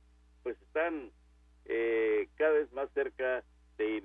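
A voice speaking in short phrases, cut off above the range of a telephone line so that it sounds thin. A steady low hum runs under it.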